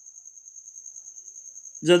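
Steady high-pitched insect trill, rapidly pulsing and unbroken, with a man's voice starting near the end.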